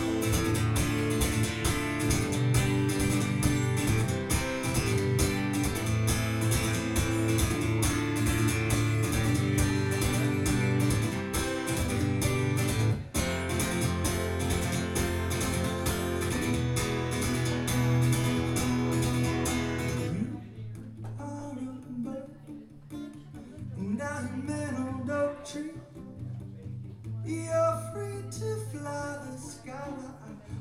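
Acoustic guitar strummed steadily as a song's instrumental intro. About two-thirds of the way through it drops to quieter, sparser playing.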